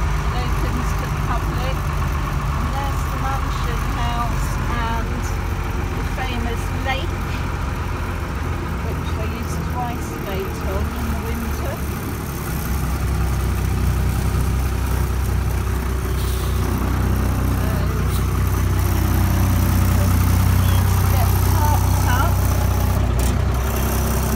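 1944 Federal articulated truck's engine running as the truck drives slowly, heard from inside the cab: a steady low drone that dips about ten seconds in, then builds and stays louder through the second half.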